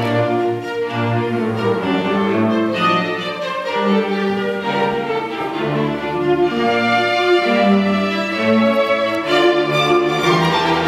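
A youth string orchestra playing classical music, violins and cellos bowing held, overlapping notes.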